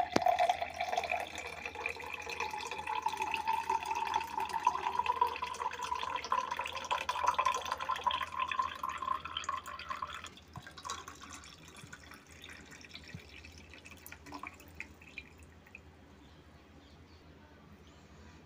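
Strained litchi juice poured in a thin stream into a glass, with a ringing tone that rises in pitch as the glass fills. The pour stops about ten seconds in, followed by faint dripping.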